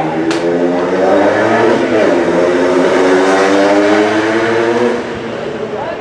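A motor vehicle engine running loudly at steady revs, with a brief dip and rise in pitch about two seconds in, stopping about five seconds in.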